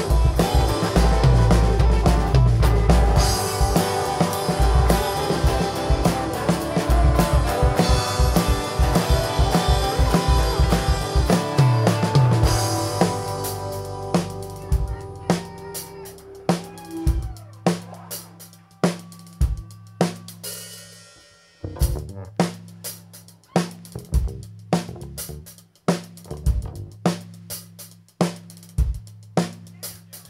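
Live folk-indie rock band playing an instrumental passage with a full drum kit. About halfway through the full band drops away, leaving spaced drum hits over a held bass note.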